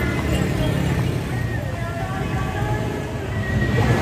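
Busy street traffic: motorbike and car engines running steadily as they pass, with indistinct voices.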